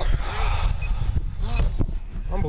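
Steady low rumble and rustle on a body-worn police camera's microphone, with short snatches of voices in the background.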